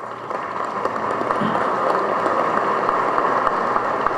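Audience applauding, swelling over the first second or so and then holding steady.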